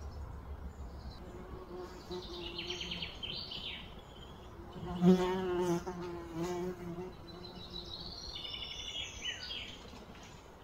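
A flying insect buzzing close by, loudest about halfway through, its pitch wavering as it moves. High bird chirps and trills come a couple of seconds in and again near the end.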